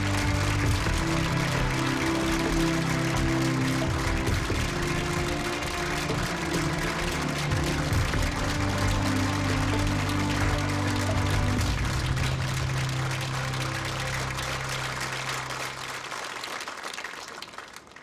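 Studio audience applauding over a music cue, the clapping and music fading out together near the end.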